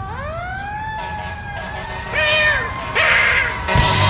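Fire engine siren winding up from the start into a steady wail, with two short horn blasts about two and three seconds in. Loud rock music comes in near the end.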